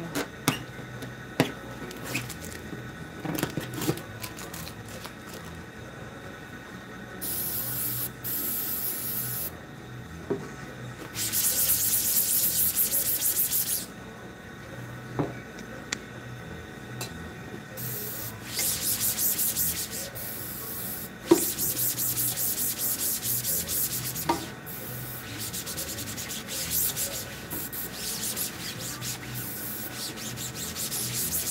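Cloth rag scrubbing the mesh of a screen-printing screen, in bursts of quick rubbing strokes that last one to three seconds each, cleaning it off. A few sharp knocks fall between the bursts.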